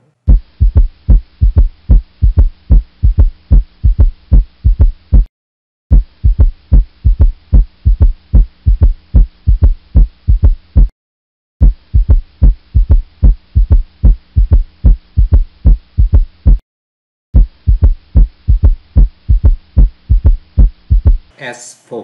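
Recorded heart sounds with a third heart sound (S3 ventricular gallop): repeated low thuds in a three-part 'Ken-tuc-ky' cadence, S1 and S2 followed by an early diastolic S3, with a faint steady hum beneath. It plays as four runs broken by three short silences. An S3 is associated with ventricular dilatation, and in older adults it indicates congestive heart failure.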